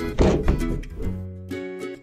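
A cartoon thunk about a quarter second in, as a small box lands in a metal wheelbarrow, followed by light plucked-string background music.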